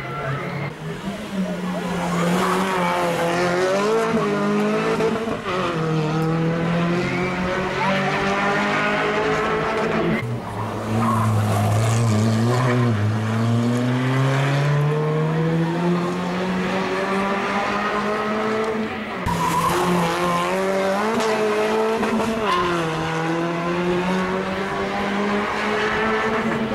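Rally car engines revving hard. The pitch climbs steadily through each gear and drops sharply at the upshifts, about ten seconds in and again near nineteen seconds.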